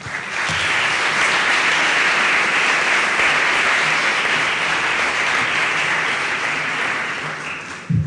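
Audience applauding: the clapping builds within the first half second, holds steady, then tapers off near the end, closing with a single low knock.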